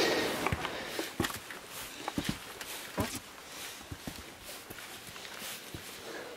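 Footsteps on stone steps and a stone path: irregular scuffs and taps, louder in the first half.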